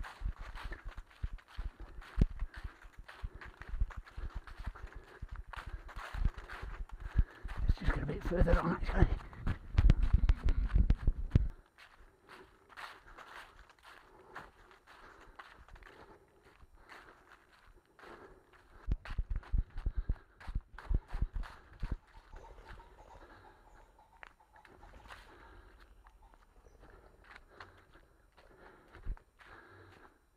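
Footfalls of someone running on a leaf-covered woodland path, repeated steadily, with a loud low rumble on the microphone for the first dozen seconds that cuts off suddenly.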